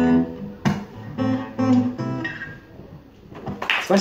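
Steel-string acoustic guitar strummed: a handful of chords that ring out and die away as the song ends. Audience applause breaks out near the end.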